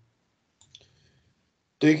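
Near silence on a video-call audio feed, broken by a faint short click a little over half a second in; a voice starts speaking near the end.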